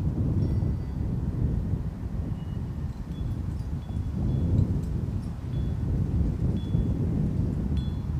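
Wind rumbling and buffeting on the microphone, with a wind chime ringing a few short high notes now and then.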